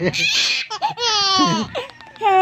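A baby laughing: a breathy burst of laughter, then a high-pitched squealing laugh that falls in pitch.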